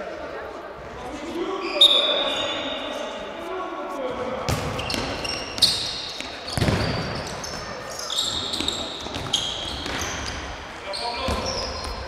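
Futsal game in a sports hall: players' shoes squeaking on the court floor, with a few sharp ball kicks and bounces in the middle, all echoing in the hall.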